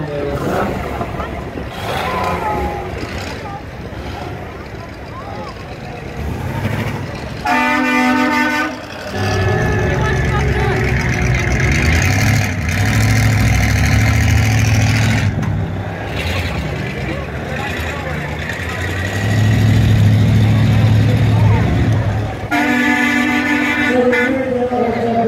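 Vehicles driving slowly past with engines rumbling, and a vehicle horn honking twice, each blast about a second and a half long, the first about a third of the way in and the second near the end.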